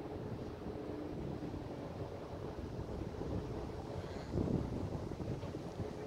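Wind buffeting the camera's microphone as a low, rough rumble over faint city background noise and a steady low hum, with a stronger gust about four and a half seconds in.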